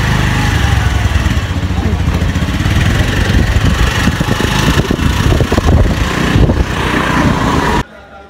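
Wind buffeting a phone's microphone over a motorbike's running engine, recorded from the back seat of the moving bike. The noise cuts off suddenly near the end.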